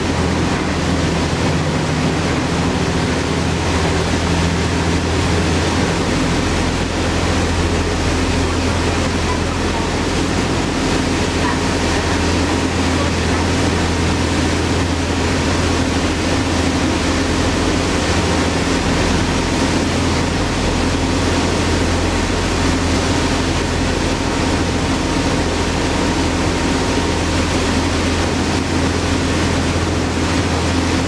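Passenger boat underway at speed: a steady engine drone with the rush of churning water from the wake behind the stern.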